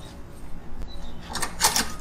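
A short cluster of metal clicks and knocks about a second and a half in, from a cam lock hose fitting being handled and fitted to a suction pipe.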